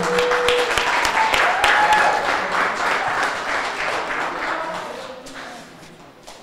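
Audience applauding, a dense run of handclaps that fades out over the last two seconds.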